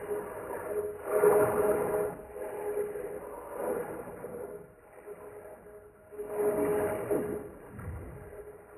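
A boy's angry yelling, slowed far down and run through a vocoder, so that it comes out as a droning chord of steady tones that swells in three long surges.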